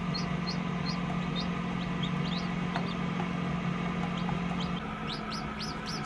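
Newly hatched chicken chicks peeping: short, high peeps about twice a second, over a steady low hum.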